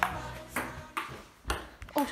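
Table tennis ball clicking off the paddles and table in a rally: sharp single clicks about half a second apart, five or so in all.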